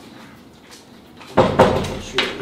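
A wooden interior door being shut, with a sudden loud knock and rattle about one and a half seconds in.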